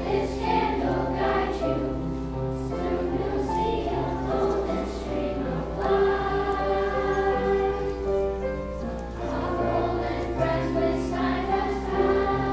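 Children's choir singing sustained, many-voiced notes, with piano accompaniment.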